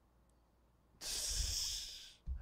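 Near silence, then about a second in a man's sharp, loud breath into a close microphone lasting about a second: an excited reaction on seeing a big card.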